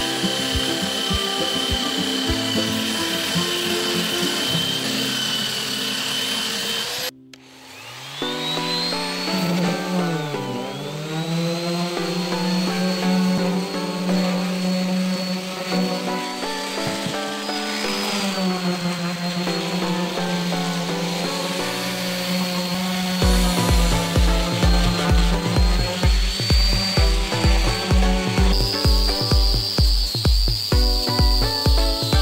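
Electric sanders working a cork-oak wood slice under background music. A belt sander runs with a steady whine until a cut about seven seconds in. An orbital sander then spins up with a rising whine and runs steadily, and a steady music beat comes in over it a few seconds before the end.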